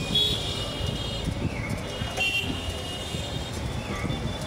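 Busy street traffic with a steady low rumble of engines and road noise. Two short high-pitched horn toots sound, one right at the start and another a little past two seconds in.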